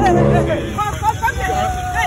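Several people talking over one another, with street traffic noise underneath.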